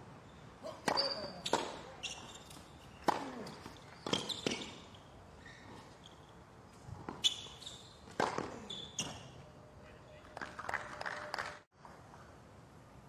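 A tennis rally on a hard court: a series of sharp racket hits and ball bounces, roughly a second apart, with short high squeaks between them.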